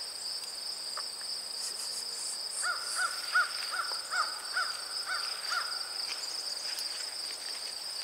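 Insects keep up a steady high-pitched drone. About three seconds in, a bird calls eight times in an even series, roughly two to three calls a second.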